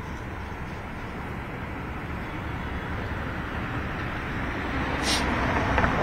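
Steady, even background noise with no clear pitch, slowly growing louder, with a sharp click about five seconds in and a voice starting at the very end.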